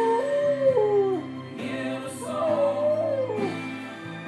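A dog howling along to music: two howls, each rising and then sliding down in pitch, the second starting about two seconds in.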